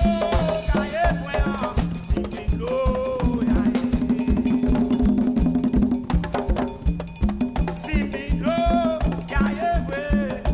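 Live Haitian vodou-style percussion ensemble: hand drums and a drum kit playing a steady fast beat, with a man's voice singing chant phrases near the start and again near the end.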